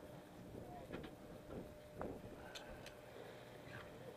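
Low, steady hum of a sportfishing boat's engine under way, with faint voices in the background and a couple of light knocks.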